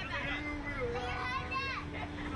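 People's voices talking and calling out in the background, some of them high-pitched, over a steady low hum and rumble.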